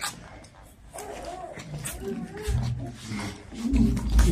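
A woman's wordless, wavering vocal sounds, animal-like and growing louder toward the end, after a brief sharp knock at the start.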